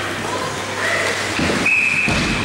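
Ice hockey referee's whistle blown once: a single steady high blast starting near the end, just after a short knock, over rink noise.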